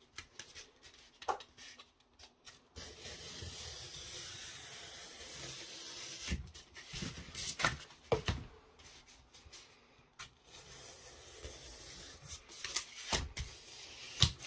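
A pointed hobby tool scratching and scraping into foam board in two long stretches, with a few short knocks as the boards are handled and set down on the table.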